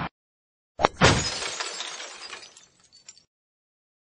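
Logo-sting sound effect: a sharp crack about a second in, quickly followed by a crash whose noisy tail fades away over about two seconds.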